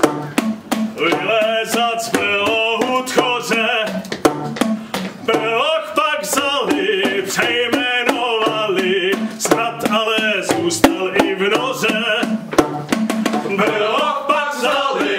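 Men's and a woman's voices singing together over a quick, even rhythm of sharp knocks from plastic percussion tubes (boomwhackers) struck by the singers.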